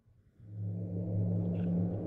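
Silence, then a low, steady droning rumble fades in about half a second in, made of a few held deep tones: an ambient soundtrack bed.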